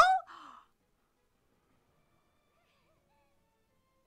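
A voice trails off into a short breathy exhale in the first half second, then near silence for the rest.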